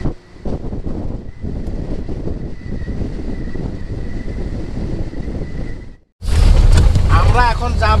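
Wind rushing over a camera on the bonnet of a moving Maruti Gypsy jeep, with the vehicle's road rumble, steady for about six seconds and cutting off suddenly. After that comes a deeper engine hum inside the cabin.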